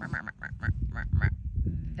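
A quick run of about eight short, nasal calls, roughly five a second, over a low steady rumble.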